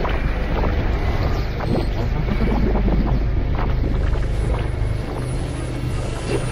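Road traffic on a multi-lane road passing close by, a steady low rumble with wind on the microphone.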